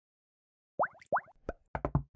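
Logo intro sound effect: after a moment of silence, two quick rising 'bloop' sounds, then a run of short taps that come closer together.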